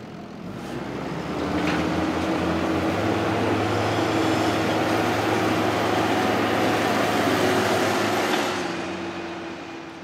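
New Holland tractor's diesel engine running at a steady pitch as it drives up onto a silage clamp, growing louder over the first couple of seconds and fading away near the end.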